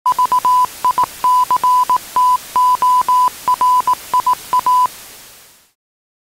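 Television static hiss with a steady-pitched electronic tone beeping over it in short and long beeps, in the manner of Morse code. The beeps stop a little before the static fades out.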